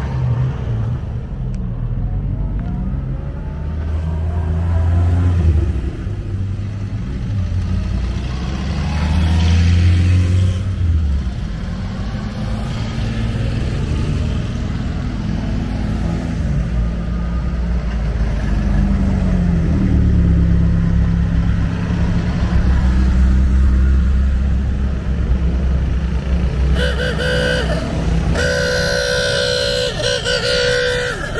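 Vintage cars driving past one after another, their engines swelling and rising and falling in pitch as each goes by. Near the end a horn gives two long toots.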